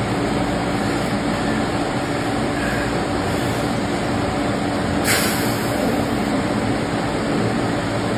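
Steady ventilation noise, a whir of fans or air-handling with a low hum, and a short hiss about five seconds in.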